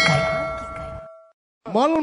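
A bell-like ding sound effect struck once, its several tones ringing and fading away over about a second, then cutting to a brief silence.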